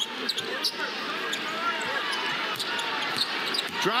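A basketball being dribbled on a hardwood arena court, sharp bounces over a steady crowd hum.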